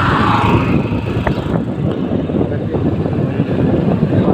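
Motorcycle riding along a road, its engine running under heavy wind buffeting on the microphone, heard as a loud, dense, choppy rumble.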